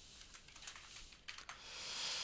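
Faint computer keyboard typing: a scatter of light key clicks, with a hiss rising near the end.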